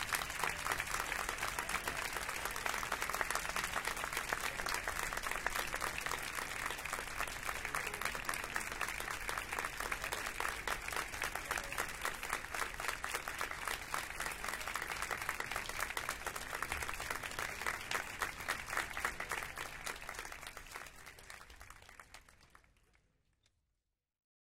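Audience applause, many people clapping steadily, fading away over the last few seconds.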